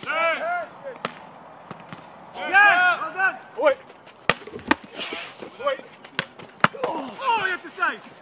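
A football being kicked and caught in a goalkeeper drill: several sharp thuds of boot and gloves on the ball, with short shouted calls between them.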